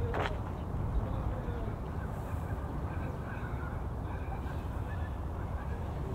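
Open-air ambience with a steady low rumble, a short sharp call right at the start, and faint, scattered distant calls through the rest.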